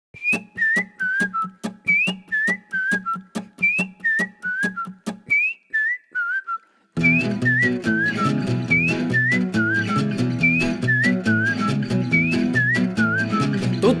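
Instrumental song intro: a whistled melody in short falling phrases over a sharp, even beat of about three strokes a second. About halfway through, a fuller band with bass comes in under the whistling.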